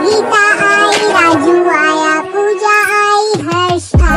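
Hindi nursery rhyme sung by a high, child-like voice over a music backing, the melody falling away in a downward slide near the end.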